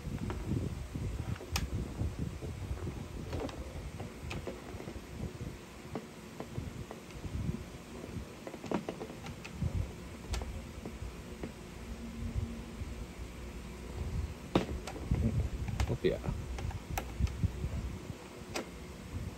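Hand screwdriver turning a screw into a plastic gel blaster's body, with handling rustle and scattered small plastic clicks and ticks.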